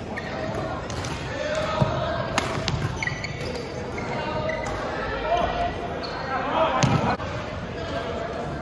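Doubles badminton rally: several sharp racket hits on the shuttlecock, spaced irregularly, echoing in a large gym hall.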